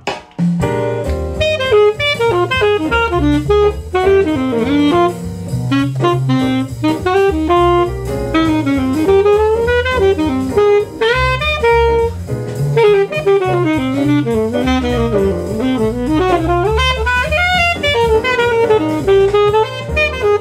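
Alto saxophone improvising fast jazz lines over a backing of bass and drums.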